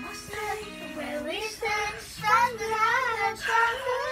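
A child singing a pop song along with a recorded backing track, the sung notes wavering and bending in pitch, loudest in the second half.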